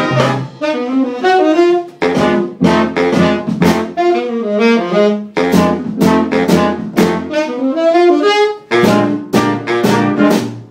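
Jazz big band horn section of saxophones, trumpets and trombone playing together, with short, punchy accented ensemble chords between moving melodic lines.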